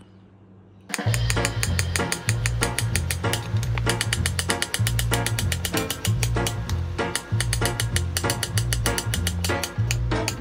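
Background music with a steady, quick beat and a repeating bass line, starting suddenly about a second in after near silence.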